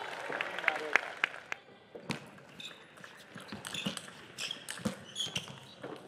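A plastic table tennis ball clicking as it bounces, three sharp taps about a second in, then scattered further ticks. A voice is heard at the start, and short high squeaks like sports shoes on the court floor follow later.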